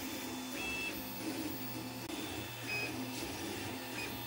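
Home-built large-format FDM 3D printer printing, its stepper motors moving the print head with a steady hum and whir. Two brief high-pitched stepper tones chirp, about half a second in and again near the end.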